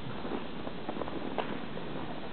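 Footsteps in snow, a few short soft crunches about a second in, over steady background noise.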